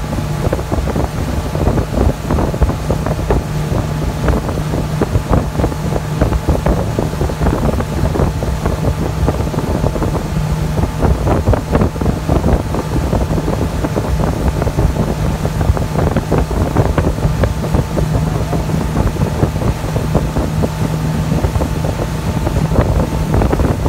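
Motorboat engine running steadily at towing speed, a constant low drone, with wind buffeting the microphone and the wake rushing behind the boat.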